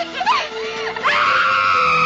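A person screaming: short rising and falling cries, then a long, high scream held from about halfway through, over a film score.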